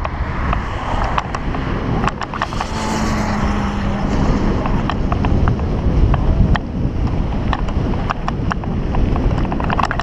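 Mountain bike rolling over a dirt and gravel track: a steady low rumble of tyres on the loose surface and wind on the microphone, with frequent sharp clicks and rattles as the bike jolts over stones and ruts.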